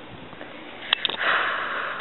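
A short click about a second in, then a sniff through the nose lasting nearly a second.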